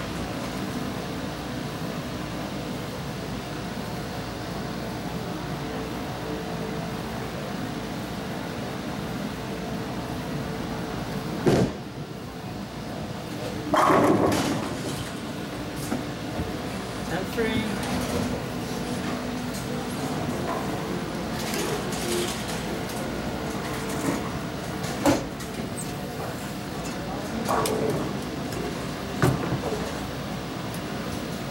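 Bowling alley ambience: a steady rumble with background voices and a few sharp knocks, the loudest about eleven and a half seconds in.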